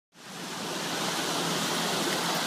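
Small waves breaking and washing up on a sandy beach: a steady rushing hiss that fades in from silence at the very start.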